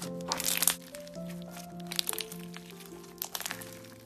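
Soft background music with sustained notes over irregular crackling and popping from pink fluffy slime studded with small beads, being squeezed and stretched by hand.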